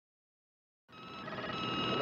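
Silence, then about a second in a steady high-pitched electronic tone, made of several pitches held together, fades in and grows louder.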